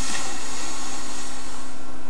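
Steady background hiss with an even low hum underneath: the room's noise floor, with no distinct event.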